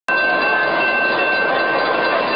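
Light-rail trolley passing: a steady rolling noise with a thin, steady high-pitched whine over it.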